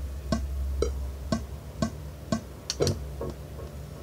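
Music playing back from a Pro Tools session, started from the Pro Control's Play button: a steady beat of about two hits a second over a low bass line.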